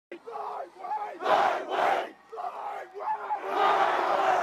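A football team in a tight huddle shouting a chant: single shouted calls answered by loud group yells from the players, twice about a second and a half in, then a longer group yell building near the end as the huddle breaks.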